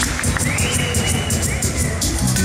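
A live reggae band kicks in at the start of a song: bass and drums come in together at once, with a steady cymbal beat and a sustained high tone over the crowd's noise.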